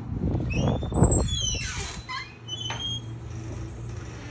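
Glass shop entrance door being pushed open, squeaking in several high, falling squeals, with a low thump about a second in.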